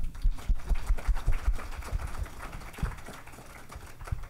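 Audience applauding: a dense patter of many hands clapping that thins out and fades over the last second or two.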